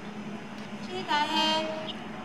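A single drawn-out call in a person's voice, about a second long, starting about halfway in, over a steady low hum.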